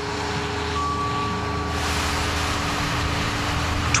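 Steady engine and road rumble of a vehicle driving along, with a brief high steady tone a little under a second in.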